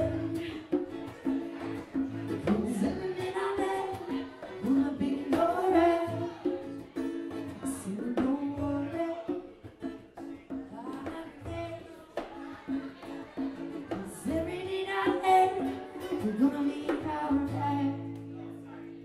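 Live acoustic band: a singer's voice over strummed acoustic guitar and drums, recorded in a small bar room.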